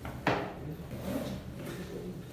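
A single sharp knock, like something wooden bumped or shut, about a quarter of a second in, followed by faint room noise.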